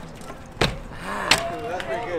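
BMX bike landing hops on concrete: two sharp knocks about two-thirds of a second apart, the second the louder.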